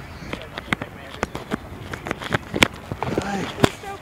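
Irregular clicks and knocks of a phone being handled, fingers rubbing and tapping over its microphone, with a short voice sound just after three seconds.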